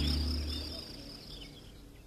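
A held low chord of background music dies away in the first second. Under it and after it there are faint, short, high chirps like crickets and birds in a nature ambience.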